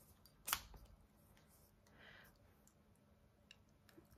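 Near silence, broken by one sharp click about half a second in and a faint rustle about two seconds in: small handling noises from a cosmetic package.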